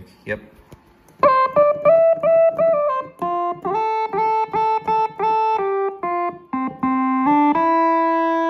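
Nord Stage 3 synth engine on the 'Creamy M Lead' sawtooth lead preset, playing a quick single-note melody of many short notes that slide into one another in places. It ends on a longer held note.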